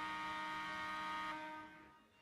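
A sustained electronic chord of several steady tones rings out at the end of the backing track. Some of its notes drop out partway through, and the rest fades away near the end.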